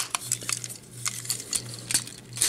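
Hard plastic parts of the LDCX Train Bots FD Steam Engine transforming robot figure clicking and clacking as it is handled. There is a cluster of sharp clicks near the start, scattered lighter ones after, and more near the end.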